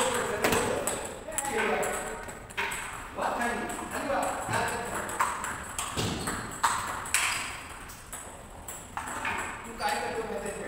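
Table tennis rally: the celluloid-type plastic ball clicking sharply off rubber bats and bouncing on the table in quick, irregular succession, with other balls in play on a nearby table.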